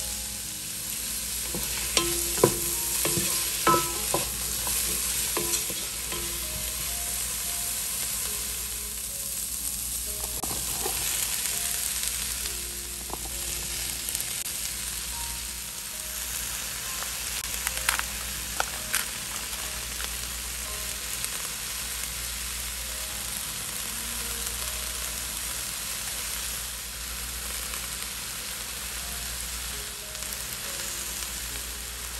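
Chopped vegetables frying in oil in a nonstick pan, a steady sizzle, with a few sharp knocks of a utensil on the pan in the first few seconds and again a little past midway.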